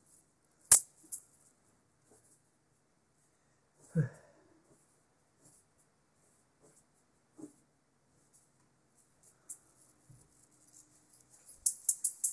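Scattered knocks from wire-wrapped juggling balls: a sharp click about a second in, a thud at about four seconds and a smaller knock at about seven and a half, with quiet between. Near the end a quick, busy jingling rattle starts up as five balls are juggled again.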